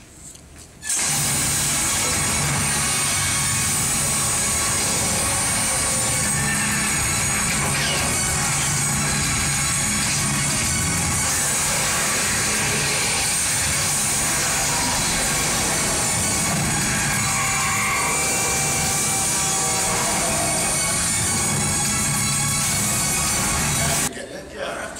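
Film-montage soundtrack played over theatre speakers: music mixed with sound effects, starting abruptly about a second in and holding a flat, steady level.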